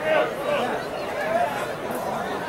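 Spectators' voices in a crowd, many people talking and calling out at once, with no single voice clear.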